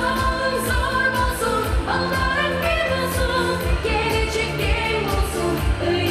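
Upbeat Asian pop song with a woman singing lead into a microphone over a backing track with a steady drum beat.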